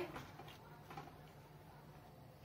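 Faint stirring of chopped spinach and moong dal in water in a clay handi with a metal spoon, with one light tick of the spoon about a second in.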